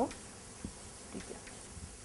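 Faint taps and scratches of chalk on a blackboard as a formula is written, a few small ticks over a steady low hiss.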